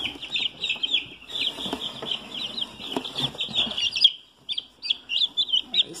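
Young Rhode Island Red chicks peeping, many short high calls overlapping in a continuous stream with a brief lull about four seconds in. Soft rustles and clicks run underneath.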